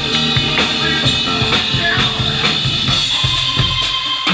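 Live band music: a drum kit keeps a steady beat under a Hammond New B-3 Portable organ, and a held high organ note comes in near the end.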